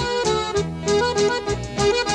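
Instrumental break of a song: an accordion playing a melody of quick short notes over bass and rhythm accompaniment, with no singing.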